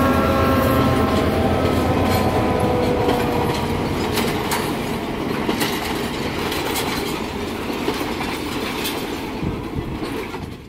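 Train rolling past: a steady rumble of wagons and passenger carriages, with irregular clicks of wheels over rail joints. A humming tone fades out over the first few seconds, and the sound eases slowly down as the train moves on.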